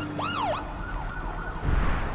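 Police car siren wailing: one sharp rise and fall, then quicker up-and-down sweeps, over a low rumble, with a deep boom coming in near the end.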